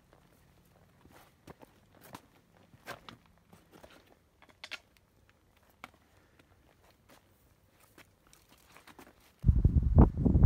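A hiker's footsteps on a rocky forest trail: faint, irregular crunches and taps. About half a second before the end, loud wind buffeting on the microphone starts suddenly.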